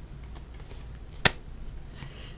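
A single sharp click about a second in, as a trading card is set down into a plastic card stand on a table, over a low steady hum.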